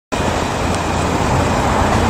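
Road traffic noise: a steady hiss of passing vehicles that swells about a second and a half in, starting just after a short cut to silence.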